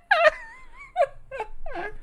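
A high-pitched wavering moan or whine, followed by three short squeals that fall in pitch.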